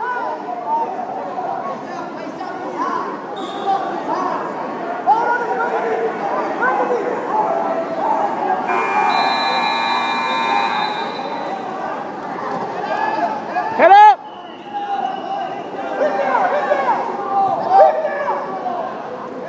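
Coaches and spectators shouting over one another at a wrestling match in a gym, with one very loud close shout about fourteen seconds in. A buzzer sounds steadily for about two seconds around the middle.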